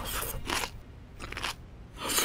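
Crisp crunching of green pepper being bitten and chewed, several separate crunches over about two seconds.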